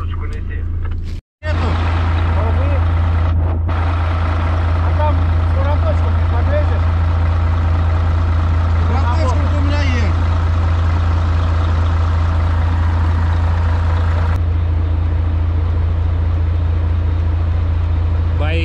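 Heavy truck's diesel engine idling with a steady low hum. The sound cuts out completely for a moment just over a second in, then the idle carries on. Faint voices can be heard in the background.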